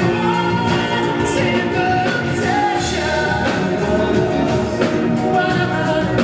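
A male lead singer singing live with a band: the vocal rides over drums and other instruments at a steady concert level.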